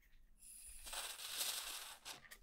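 Aerosol can of WD-40 brand contact cleaner spraying through its straw into a rotary encoder: a thin, high hiss that starts about half a second in, swells, and stops at about two seconds.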